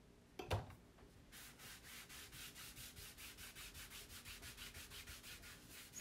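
Stain wax being rubbed by hand onto a painted wooden sign in quick, light back-and-forth strokes, about five a second. The rubbing is faint and comes after a single knock about half a second in.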